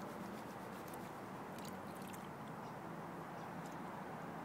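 Water sloshing and washing in a plastic gold pan as it is swirled and dipped in a tub, with faint gritty clicks of gravel and sand moving over the pan's riffles.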